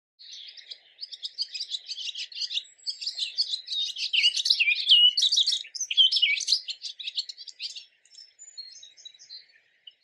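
Barn swallow song: a rapid, dense twittering of high chirps and slurred notes that swells to its loudest in the middle, then thins to scattered notes near the end.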